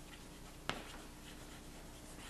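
Chalk writing on a blackboard: faint strokes, with one sharp click a little under a second in.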